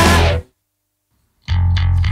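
Rock band with distorted electric guitar and bass playing loud, then cutting off abruptly to a full stop about half a second in. After about a second of silence, the band comes crashing back in with sharp hits.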